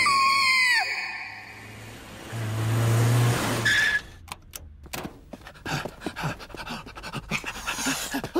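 A cartoon character's high scream that glides up, holds, and drops away within the first second. Then a small car's engine runs for about a second, and a string of short clicks and taps fills the second half.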